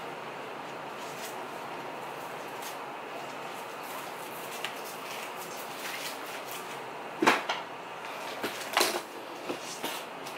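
Steady room hiss with light handling clicks, then two knocks about seven and nine seconds in as a hair iron in its heat pouch is put away.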